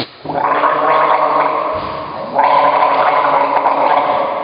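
A person gargling with voice, a loud rough bubbling tone held in long stretches; it stops briefly just after the start and again near the middle, then comes back louder.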